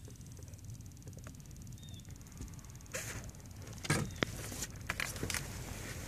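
Quiet outdoor background with a steady low rumble and a handful of light clicks and taps in the second half, the sharpest about four seconds in.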